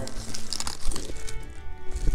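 Foil-lined paper burger wrapper crinkling as it is handled, in short irregular rustles, with soft steady musical tones under it in the second second.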